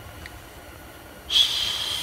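A quick breath drawn in through the nose, with a faint whistle in it, near the end, just before speech resumes.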